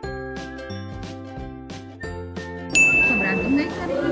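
Light, tinkling background music of held and plucked notes, then a sudden loud, high-pitched ding sound effect about two-thirds of the way in that rings steadily for about a second.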